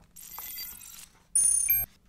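Slide-transition sound effect: a soft airy whoosh lasting about a second, then a brief, louder chime of several steady high tones.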